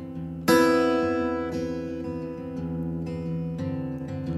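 Recorded song, instrumental passage on acoustic guitar: a chord strummed about half a second in rings on and slowly fades.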